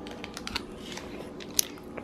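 Thin clear plastic bags crinkling faintly as a baby handles them, a few light crackles with one sharper one about a second and a half in.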